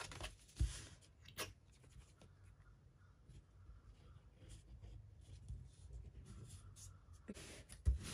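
Faint rustling and rubbing of hands and paper as glue is applied and a textured paper sheet is smoothed down by hand, with two light taps in the first second and a half, over a low room hum.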